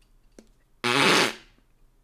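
A man blowing a short, loud raspberry through his lips, about a second in, after a faint click.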